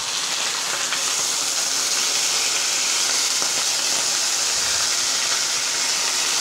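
A steady hiss at an even level throughout, strongest in the high range, with no distinct knocks or clicks standing out.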